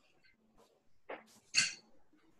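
A dog barking twice in quick succession, the second bark louder, heard over a video call's microphone.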